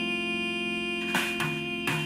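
Recorded music played back through a paper-tube full-range speaker and picked up by a microphone in the room: a held chord for about a second, then a few plucked notes with a low bass note coming in.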